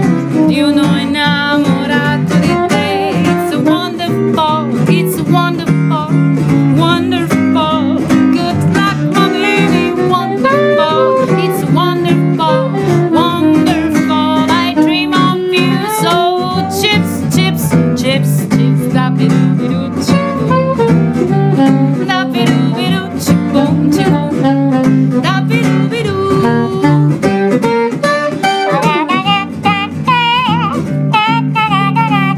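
Live acoustic blues-jazz music: acoustic guitar strumming under a melody from a soprano saxophone and a woman's singing voice.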